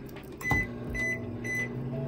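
West Bend microwave oven keypad beeping three times as buttons are pressed, with a clunk as the oven starts about half a second in, then the low steady hum of the oven running.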